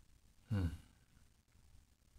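A man's short voiced sigh, falling in pitch, about half a second in, in an otherwise quiet room.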